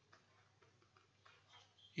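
Near silence with a few faint, light ticks of a stylus tapping and sliding on a tablet screen while handwriting.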